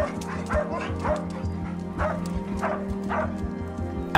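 Dog barks and yips, a run of short, sharp calls about every half second, over steady background music.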